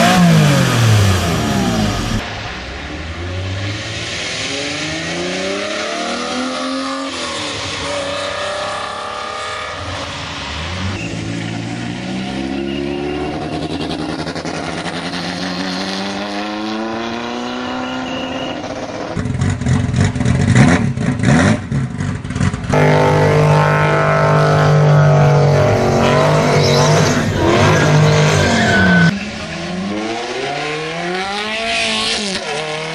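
Supercar engines revved hard at full throttle in a run of short clips cut together. A Jaguar XJ220's engine is heard at the start, then other cars accelerate past with engine notes rising and falling through gear changes, and a Ferrari F430 comes in near the end. The engines are loudest in the last third, with sudden cuts between cars.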